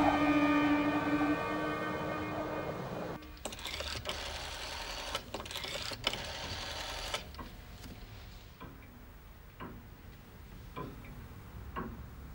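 Orchestral string music that cuts off suddenly about three seconds in, followed by a few seconds of rattling noise. Then a clock ticks slowly, about once a second.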